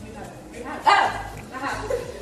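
Women's laughter and exclamations, with one sharp, loud cry about a second in.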